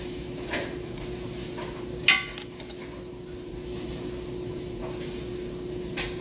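A steady low hum, with one sharp click and a short ring about two seconds in and a few faint ticks before it.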